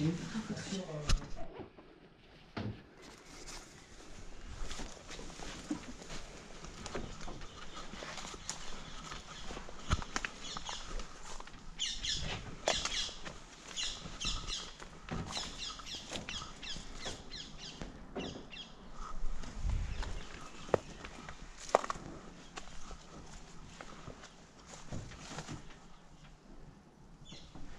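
Birds chirping in short high repeated notes, busiest in the middle, with scattered clicks and knocks of people moving about.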